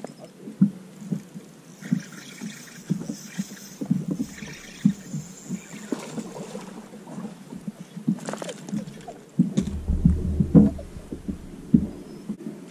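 Small waves lapping and slapping against the hull of a fibreglass bass boat: irregular low knocks, several a second. A deeper rumble comes in for about two seconds near the end.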